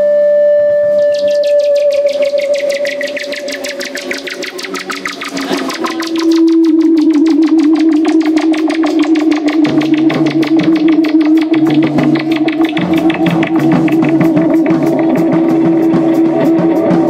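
Live rock band music led by electric guitar. One held note fades out, then a lower held note starts about six seconds in over a fast, even pulse, and bass notes join near ten seconds.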